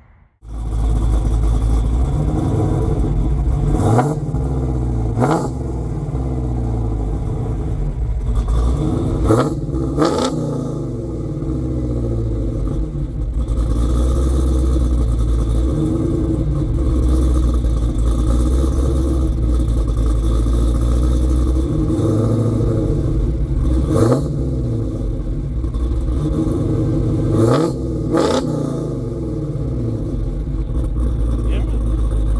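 Modified 2019 Dodge Challenger SRT Hellcat Redeye's supercharged 6.2-litre HEMI V8, fitted with a 4.5-litre Whipple supercharger, a cam, Kooks 2-inch headers and a Corsa exhaust and running on E85, idling and blipped on the throttle about seven times. The blips come in quick rises and falls of pitch, a few seconds in and again near the end.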